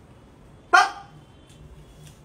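A single short, sharp call about three-quarters of a second in, starting loud and falling in pitch.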